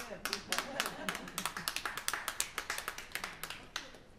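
Brief, sparse applause from a small audience: a few people clapping unevenly, stopping just before the end.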